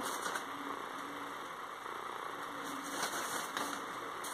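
A steady background hum, with a few faint rustles and clicks of crepe paper being handled as thread is tied around the gathered base of a paper flower.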